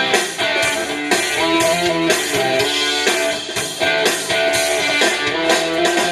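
Live band playing a rock song, with guitars over a steady drum beat.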